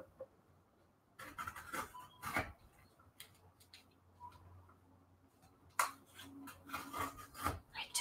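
Paper scraps rustling and sliding on a tabletop as they are handled and arranged, in short scattered spells with quiet stretches between.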